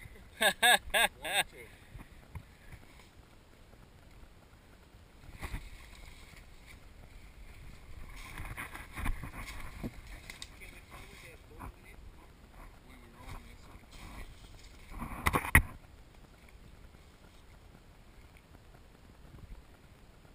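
Rustling and scuffing of dry leaves and brush close to a body-worn camera, with a short loud crackle about fifteen seconds in. Near the start, four short loud vocal sounds.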